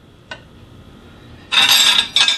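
Metal utensils on ceramic plates: one light clink, then a louder scrape lasting about half a second near the end.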